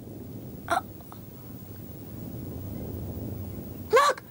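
A low rumble that swells slightly, the sort of cartoon sound effect that precedes approaching stone creatures. About three-quarters of a second in there is one short, sharp vocal sound.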